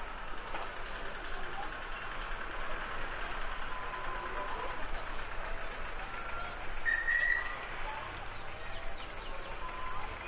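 Town-square ambience: the chatter of many people talking at a distance, with no single voice standing out. A brief, higher steady tone about seven seconds in is the loudest moment, and a few short high chirps follow near the end.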